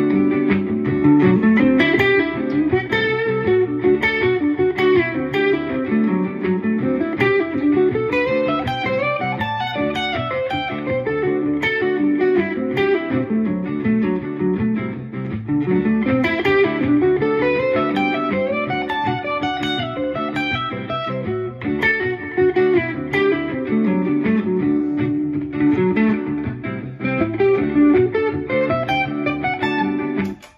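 Stratocaster-style electric guitar playing a continuous single-note lead line in D Mixolydian, moving between D and C triad shapes, with quick rising runs about 8 and 16 seconds in.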